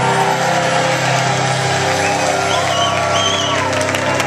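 A rock band's final chord held and ringing out at a live concert, with the crowd shouting, cheering and whooping over it; the whoops pick up about halfway through.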